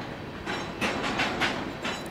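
Freight train cars rolling past on the track, a steady rushing rumble with repeated clickety-clack clatters of the wheels over the rail joints.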